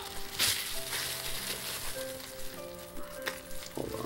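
Crusty bread loaf being torn apart, its crust crackling, over soft sustained music notes that change every second or so. A couple of short knocks come near the end.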